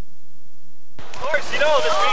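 Faint tape hiss, then about a second in a sudden burst of rushing white water with a high voice calling out in several rising-and-falling cries.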